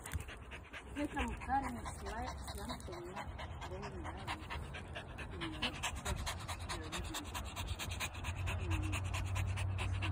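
A small dog panting quickly right at the microphone, a fast, even run of short breaths.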